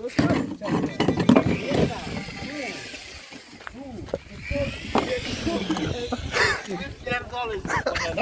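People talking, their words indistinct, with one voice raised higher and louder near the end.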